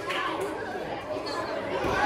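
Audience chatter: several people talking at once, with no one voice standing out.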